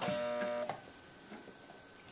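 Electric sewing machine motor running briefly at a steady pitch and stopping under a second in, as the foot pedal is pressed and let off; a faint steady hum remains.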